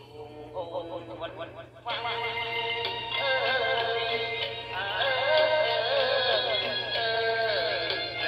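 Khmer song playing: a quiet, sparse instrumental passage, then the full backing band comes in about two seconds in, and a singer's voice with a wavering, ornamented melody joins about a second later.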